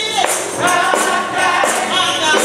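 Gospel singing: a woman's lead voice on a microphone with other voices joining, and a tambourine shaken in a steady beat.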